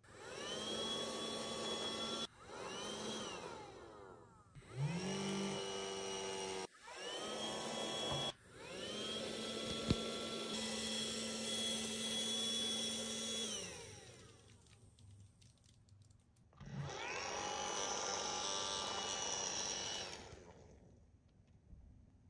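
Small battery fan motor of a Bluey Dance Mode bubble machine whirring in about six separate runs. Each run winds up in pitch at the start and winds down at the end. The longest run is in the middle.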